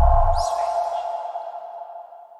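Channel logo sting: a deep boom dying away in the first half second, under a steady ringing tone that fades out slowly, with a brief high swish about half a second in.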